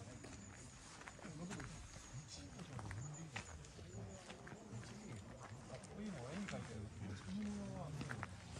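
Indistinct talk from people standing around, with scattered footsteps on asphalt; the voices grow closer near the end.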